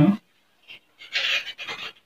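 Whiteboard eraser rubbed across the board in quick back-and-forth wiping strokes, starting about a second in with one longer stroke and then several short ones.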